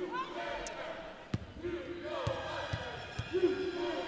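A basketball bouncing on the court, about four dribbles less than a second apart in the second half, under voices in the arena: a free-throw shooter dribbling before her attempt.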